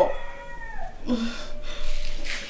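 A person's drawn-out wailing cry ending in a sharp falling pitch, followed by a few short, fainter whimpering sounds.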